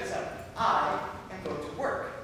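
A performer's voice in two loud outbursts, one about half a second in and one near the end.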